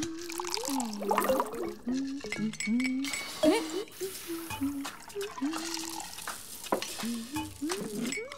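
Cartoon soundtrack: a wavering tune of held and sliding low notes, with scattered small clicks and clinks.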